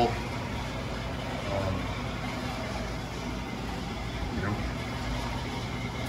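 Steady low hum of a running room appliance, with a brief faint murmur of voice about a second and a half in.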